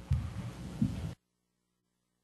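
A few low, muffled thumps picked up by the room microphone, then the sound cuts out abruptly to near silence about a second in, leaving only a faint low hum: a dropout in the recording.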